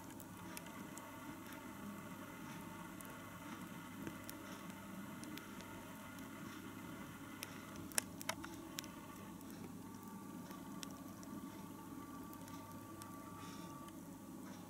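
Giant African land snails (Achatina) eating orange flesh: faint crackling made of many tiny scattered clicks, with one sharper click about eight seconds in.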